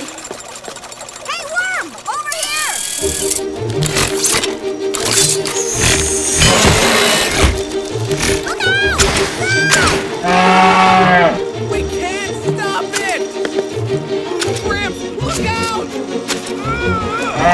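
Cartoon action soundtrack: music with a steady pulsing beat starting about three seconds in, mixed with whooshing sound effects, a few knocks and short wordless vocal cries.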